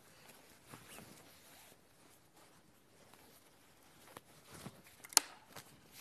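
Quiet rustling of fabric being handled as a sewn bag is turned right side out and its corners poked out, with a few small ticks and one sharp click about five seconds in.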